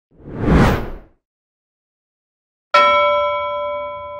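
A whoosh sound effect swells and fades within the first second. After a pause of about a second and a half comes a sudden bell-like ding that rings on in several clear tones, slowly fading.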